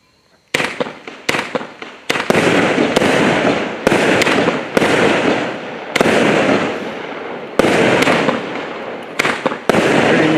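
A 200-shot 0.8-inch mixed fireworks cake firing. Sharp shots start about half a second in and come at an uneven pace of about one to two a second, each followed by its burst trailing off.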